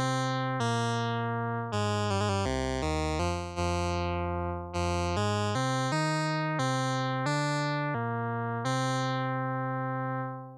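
Monophonic VCV Rack synth lead, a short-pulse square wave blended with a triangle wave an octave below through a low-pass filter, playing a melody of a dozen or so notes. Each note starts bright and mellows as the filter envelope closes, and sinks a little in volume while held. A quick run of short notes comes about two seconds in.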